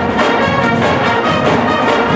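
A large high school pep band playing live, brass and woodwinds together, with a regular beat.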